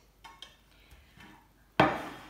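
Kitchen utensils handled on a wooden cutting board: a few faint light clicks, then one sharp knock with a short ring near the end.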